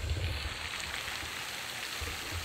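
Steady outdoor background noise: a soft, even hiss over a low rumble.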